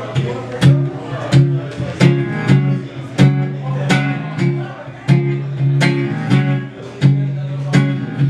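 Acoustic guitar strumming an upbeat chord rhythm as the instrumental intro of a folk-pop song, with sharp accented strokes recurring about every half second to second.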